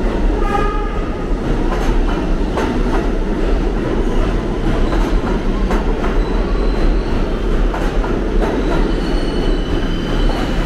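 A New York City subway train running along the track: a steady rumble with repeated clacks from the wheels over rail joints. About half a second in there is a brief pitched tone with several notes stacked together, and near the end a thin high squeal, typical of wheels in a curve.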